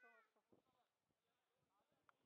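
Faint voices of people: a brief high-pitched call, falling in pitch, right at the start, then quieter chatter.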